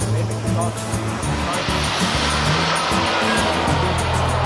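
Turbine of a model jet flying past, a hissing rush that builds from about a second and a half in and is loudest in the second half, over background music with a steady bass line.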